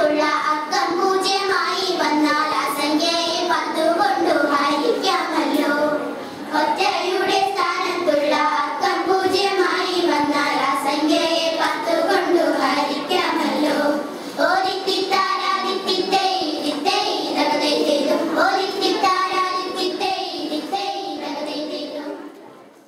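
A group of young girls singing a vanchippattu, a Kerala boat song, together in Malayalam, with short breaks about six and fourteen seconds in, fading out at the end.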